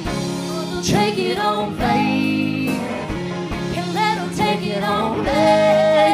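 Americana folk band playing live, with singing over guitar and full band accompaniment.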